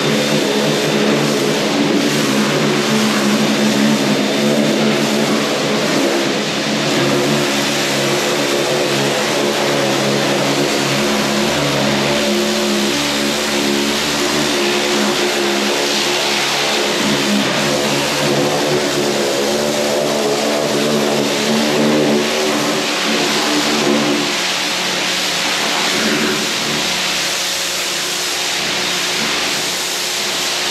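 Stihl pressure washer running steadily, its motor and pump humming under load while the water jet hisses against a slatted pig-pen floor. The hum thins and drops a little about three-quarters of the way through.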